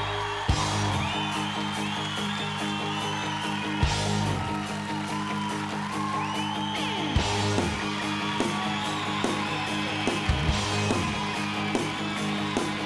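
Rock music led by electric guitar, with sliding notes over a steady beat.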